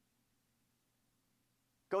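Near silence: room tone with a faint steady low hum during a pause in a man's speech, which starts again just at the end.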